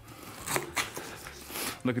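Kitchen knife cutting down through the rind of a whole pineapple, a few short scraping cuts.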